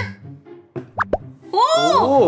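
A bath ball dropping into a tub of water, two quick plops about a second in as it goes under and starts to fizz.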